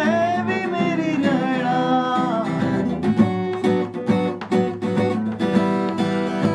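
Acoustic guitar being strummed, with a man singing along for the first couple of seconds. After that the guitar goes on alone in a steady strumming rhythm.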